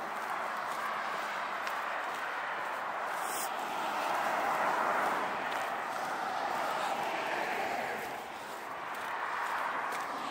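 Road traffic passing on a busy junction: a steady rush of tyre and engine noise that swells as vehicles go by about four to five seconds in and again near seven seconds, easing briefly near eight seconds.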